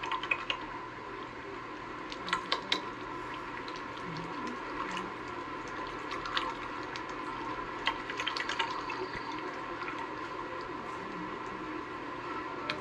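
Water pouring and trickling from a tippy-tap, a foot-pedal-tipped water container, onto hands being rinsed of soap. A few light knocks and clicks come about two to three seconds in and again about eight seconds in. It is heard through the playback speaker of a projected video.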